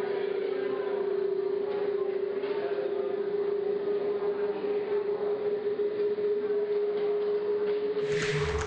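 A steady drone held on one mid-low pitch, with a faint rough murmur of noise beneath it.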